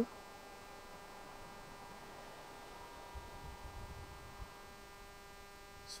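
Faint steady electrical hum, with some soft low rumbling a little past the middle.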